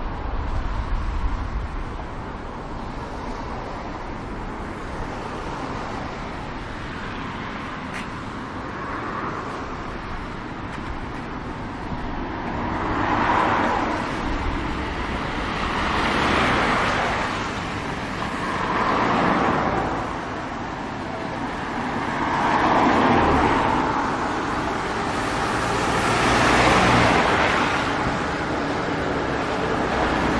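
Cars passing one after another on a wet road: a steady traffic hum, then from about halfway in five separate passes, each a swell of tyre hiss that rises and fades.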